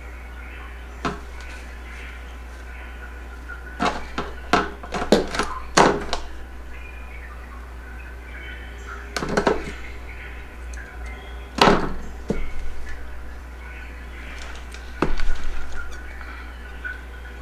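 Crisp snaps and rustles from leaves being pulled off Hoya vine cuttings by hand, over a steady low hum. The snaps come in short bunches: a single one about a second in, a rapid run around 4 to 6 seconds, then more near 9, 12 and 15 seconds.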